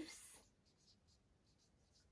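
Marker pen writing on flip-chart paper: a run of faint short strokes.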